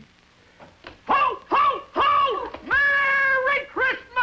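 About a second of near silence, then high-pitched children's voices calling out in several short, rising-and-falling cries and one long held cry.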